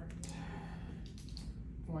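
Mostly speech: a man starts talking near the end over a steady low hum in the room, with a few short soft noises before he speaks.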